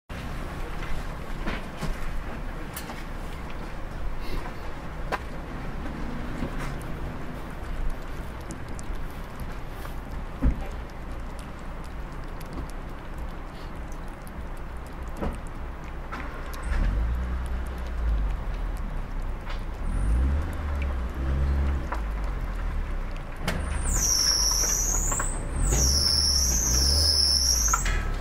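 A motor vehicle's engine rumbles nearby, getting louder from a little past halfway. A high, wavering squeal sounds over it in the last few seconds. Faint clicks of a cat chewing close by run underneath.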